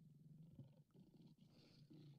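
Near silence: faint low room hum.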